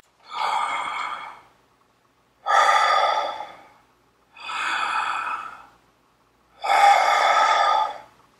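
A man breathing deeply in an inspiratory rib-cage breathing exercise, expanding his rib cage. Four loud breaths, each lasting about one to one and a half seconds, with short silent gaps between them.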